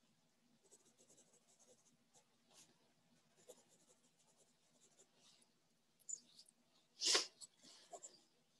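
Faint scratching of a pen or pencil writing on paper, with a short, louder burst of noise about seven seconds in.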